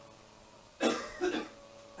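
A man clears his throat: a short rasp about a second in, followed by a smaller one.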